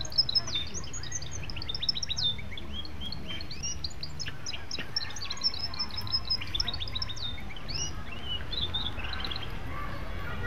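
Many small birds chirping together: a dense run of short chirps and quick sweeping calls, thinning out near the end, over a steady low rumble.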